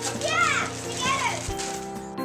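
Young children's excited, high-pitched voices and squeals over background music with steady held notes.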